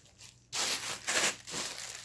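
Thin grey plastic poly mailer crinkling loudly as it is handled, starting about half a second in and going on in several surges.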